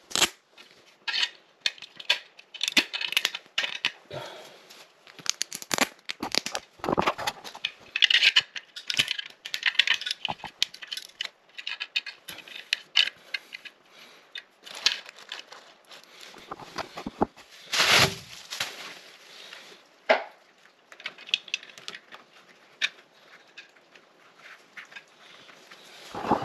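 Close-up handling of toilet flange hardware: scattered small clicks and scrapes of brass closet bolts and plastic retaining washers being fitted to a metal toilet flange, with crinkling plastic and one louder rustle near the middle.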